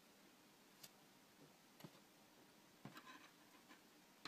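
Near silence with a few faint clicks and light rustling from gold beaded wire petals being handled and fitted together: one click about a second in, another near two seconds, and a short cluster around three seconds.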